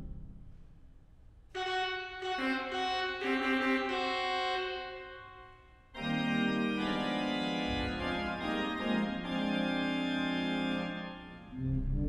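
Pipe organ playing sustained chords. A chord enters about a second and a half in, thickens as more notes join, and fades away near the middle. A second, fuller chord comes in at once, with a deep bass note joining a couple of seconds later, and is held until just before the end.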